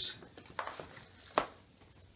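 Handling noise of a solid-body electric guitar being set down in its cardboard shipping box: soft rustling, then a single sharp knock about one and a half seconds in.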